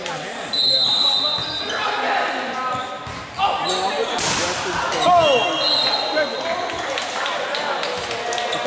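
Indoor volleyball rally on a hardwood gym court: sneakers squeaking on the floor, sharp thumps of the ball being hit, and players calling out, all echoing in the hall. A short burst of louder noise comes about four seconds in.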